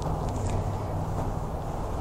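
Steady low mechanical hum under an even rushing background noise.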